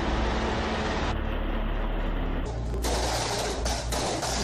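Military helicopter's rotor and engine noise as it hovers low over a city street, a steady heavy rumble. About two and a half seconds in, it gives way to a rapid string of gunshots and bangs.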